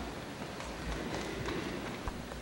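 Footsteps and shuffling of choir members stepping into place on risers: scattered soft footfalls over a steady hiss.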